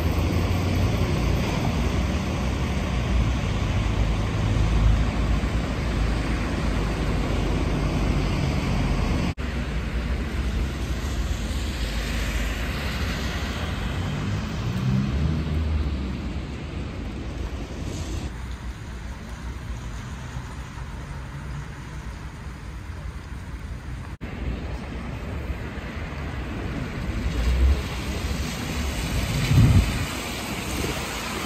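Street traffic on wet roads: the hiss and engine rumble of passing cars and buses, changing abruptly a few times.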